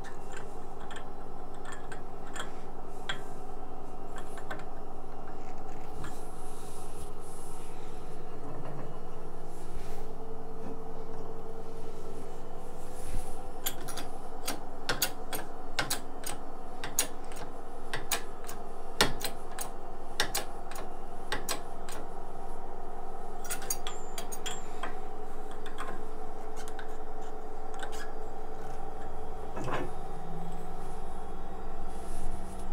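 Bottle-jack hydraulic shop press at work, pressing a ball bearing back onto an angle grinder armature shaft: a long run of irregular clicks and light metallic ticks, thickest midway, over a steady hum.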